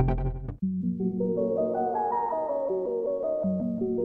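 Korg Minilogue analogue synthesizer: a beat-driven pattern with deep bass cuts off about half a second in. A plucked-sounding patch then plays a rising run of notes over a held low note, beginning the phrase again about three and a half seconds in.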